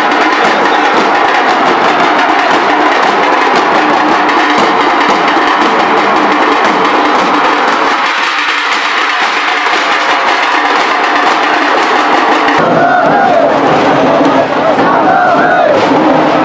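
A troupe of dhol drummers with smaller tasha drums beats a dense, loud, driving rhythm. About three-quarters of the way through, the sound changes to a crowd shouting and chanting.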